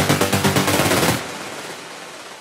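Techno build-up: a rapid, machine-gun-like drum roll that cuts off about a second in, leaving a fading wash of hiss.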